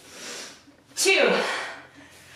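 A woman's forceful voiced exhale about a second in, starting breathy and falling in pitch as it fades, after a quieter breath at the start: effort breathing through a sliding pike rep.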